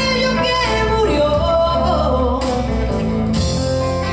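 Live acoustic rock band playing: a woman sings a melodic line over strummed acoustic guitar and electric bass, with light percussion accents.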